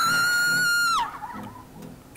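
A young woman's high-pitched scream of fright on a tube slide, held on one pitch for about a second, rising at the start and falling away at the end.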